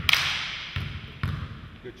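Basketball bouncing on a hardwood gym floor, three echoing bounces coming closer together.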